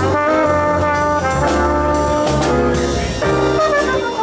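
A trumpet plays a jazz melody of held, sustained notes over a live band with bass guitar, electric keyboard and drums, with cymbals sounding through.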